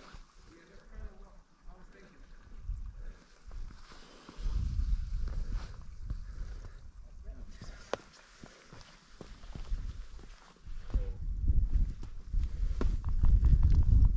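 Wind buffeting the microphone in gusts, a low rumble that swells about four seconds in and grows strongest near the end, with a few light scuffs of footsteps on granite rock.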